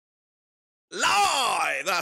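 Silence for about a second, then a man's voice cuts in with a drawn-out wordless call that rises and then falls in pitch, leading into speech.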